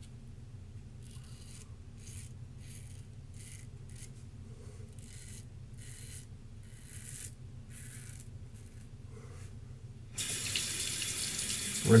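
Open-comb double-edge safety razor scraping through about four days of stubble in a series of short strokes, roughly one or two a second. About ten seconds in, a tap starts running into the sink as the razor is rinsed.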